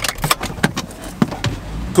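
Inside a car cabin, a string of sharp clicks and knocks as the gear lever is handled, over a low hum from the car that swells near the end.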